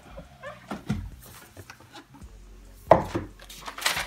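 Handling a cardboard shoebox: a dull knock about a second in as the lid comes off, then paper rustling and crinkling in short strokes near the end as papers are lifted out of the box.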